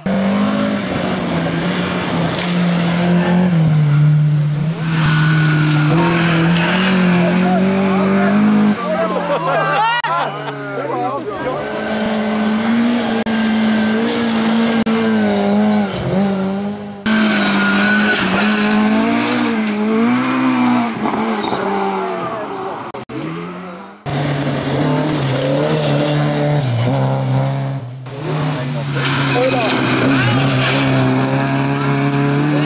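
Rally cars driven hard on a loose gravel stage, one after another in short clips: engines revving high, pitch rising and falling with gear changes and lifts off the throttle, over the noise of tyres on gravel. The sound changes suddenly several times as one car's pass gives way to the next.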